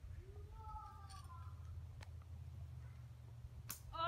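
A faint, distant voice over a low steady rumble, with a single sharp brief noise near the end.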